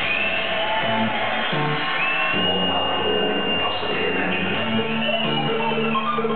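Electronic dance music from a live DJ set over a club sound system: a bass line stepping between notes under a high note that slides up and is held for a couple of seconds.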